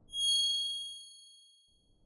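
A single bright ding: a high, ringing chime with several tones struck once and fading away over about a second and a half, the sound effect of an animated logo sting.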